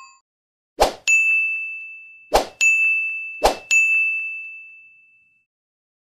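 Notification-bell sound effect for a subscribe animation, heard three times: a short knock, then a bright bell ding that rings and fades. The last ding dies away before the end.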